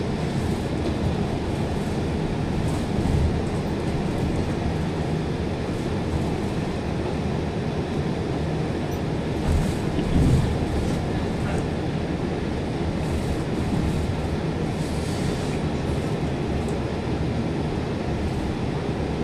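Steady rumble of a moving bus heard from inside the cabin: engine and road noise, with a couple of louder bumps about 3 and 10 seconds in.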